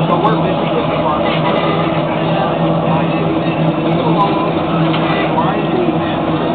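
Steady mechanical drone with a constant low hum, under faint background voices.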